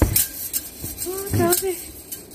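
A door being pushed open, with a sharp knock right at the start and a lighter click just after, then a brief wordless vocal sound about a second and a half in.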